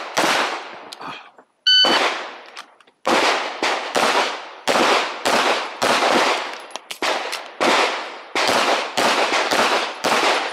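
Walther PDP Fullsize pistol firing in rapid strings, roughly two to three shots a second, each shot with a short echo tail. About two seconds in, a short high electronic beep of a competition shot timer starts a new stage, and about a second later the shooting resumes and runs on through the rest.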